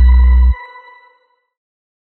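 Tail of an electronic outro jingle: a deep bass note and chiming tones cut off abruptly about half a second in, leaving ping-like tones that ring out and fade by about a second and a half.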